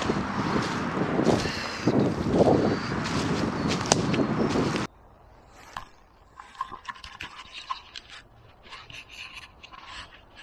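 Close scraping and rustling of footsteps through dry leaf litter and undergrowth, with a few sharp snaps, cutting off abruptly about five seconds in. Quieter scattered clicks and rustles of the camera being handled follow.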